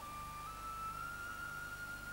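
Soft background music: a single sustained high note that steps up slightly about half a second in and is then held.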